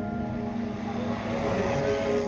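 A pickup truck passing close by, its rushing noise swelling to a peak near the end and then fading, over soft ambient music with steady held tones.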